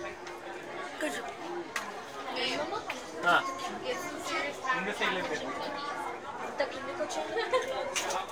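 Background chatter of many visitors, several voices talking over one another in a large, busy room.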